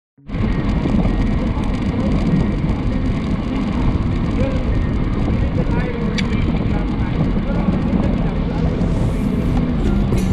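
Wind rushing over the microphone of a camera on a moving road bicycle, a steady deep rush that starts a moment in.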